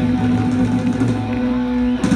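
Live rock band with electric guitars and bass holding one steady sustained chord, the song's final chord ringing out, which breaks off near the end.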